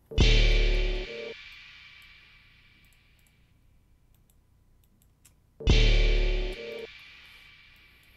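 A trap beat played back twice in short snippets from the same spot: each opens with a deep 808 bass hit, a brief bit of melody and a crash cymbal that rings and fades out over about three seconds. The second snippet starts about five and a half seconds in, with faint mouse clicks in the quiet gap between.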